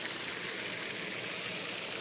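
Floating pond fountain spraying, a steady hiss of water falling back and splashing onto the pond surface.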